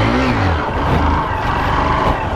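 Honda Fan 125's single-cylinder four-stroke engine running at fairly steady revs while the motorcycle is ridden in a slow circle on its rear wheel.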